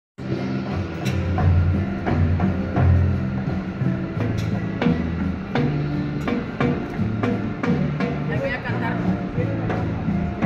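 Latin dance music from a band with congas and timbales: a steady bass line under regular, sharp percussion strikes.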